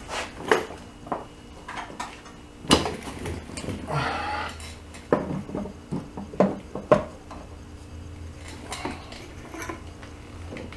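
Irregular metallic clinks and knocks of parts and tools being handled in an air-cooled VW engine bay during reassembly, with a short scrape about four seconds in. The engine is not running.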